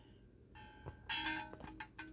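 Small gold metal Christmas-tree-shaped hanging bell jingling as it is handled: a brief ringing with several clear tones about a second in, followed by faint clinks.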